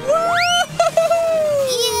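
Animated characters' long, drawn-out "whoa" cry, held and then sliding down in pitch as they fly through the air, with a quick rising whistle-like glide near the start over background music.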